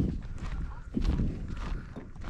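Walking footsteps heard close to a body-worn camera, a heavy low thump with each step and a light crunch over it.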